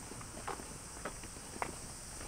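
Footsteps of a person walking on an asphalt lane, about two steps a second, over a steady high-pitched hiss.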